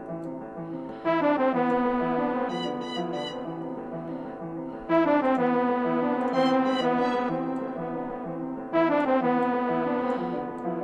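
A sampled orchestral string melody playing back as a loop in a beat under construction, its phrase restarting about every four seconds, three times.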